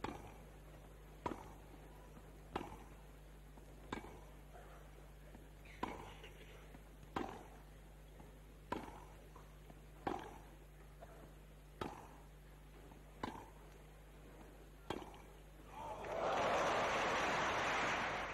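Tennis ball struck back and forth by rackets in a rally: about eleven sharp hits, roughly one every second and a half. Near the end, crowd applause swells up and is the loudest part.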